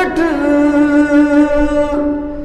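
A man singing a naat, holding one long steady note after a short glide at the start.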